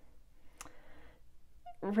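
Quiet room tone with a single short click a little after the start.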